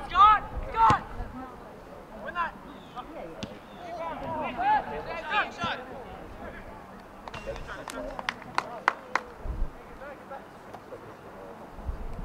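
Indistinct shouts from players and spectators across an outdoor soccer field, followed about eight seconds in by a quick run of sharp knocks.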